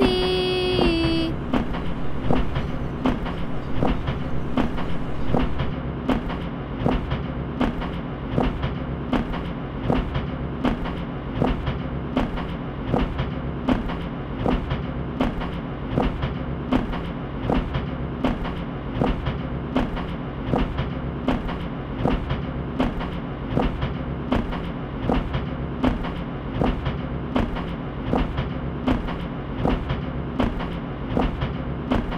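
Train running along the track, its wheels clicking over the rail joints in a steady, even rhythm over a continuous low rumble.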